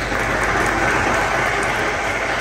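Crowd applauding with dense, steady clapping that swells right at the start.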